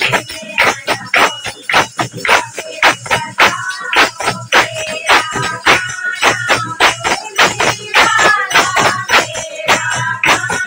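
A group of women singing a devotional bhajan in unison over steady, rhythmic hand-clapping, about three claps a second.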